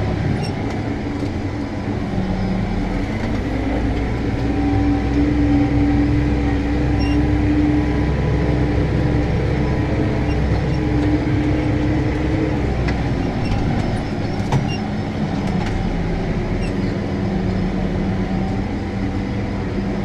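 Case Maxxum 125 tractor's six-cylinder diesel engine running steadily under load while pulling a stubble cultivator through the soil, heard from inside the cab. The engine note shifts slightly about two-thirds of the way through.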